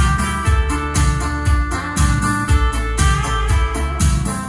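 Instrumental music with a steady bass beat, about two hits a second, played through a pair of JBL G2000 Limited hi-fi loudspeakers as a listening test.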